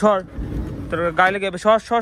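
A person talking in an animated, sing-song voice, with a brief low rumble about half a second in.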